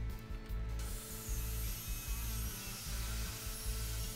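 Background guitar music with a steady low bass. From about a second in, a faint, even noise of a hand-held circular saw with an aluminum-cutting blade cutting through the aluminum ramp.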